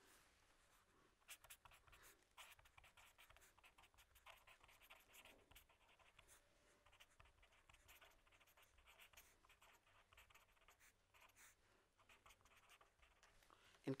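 Faint scratching of a pen on paper as a line of handwriting is written, in many short strokes.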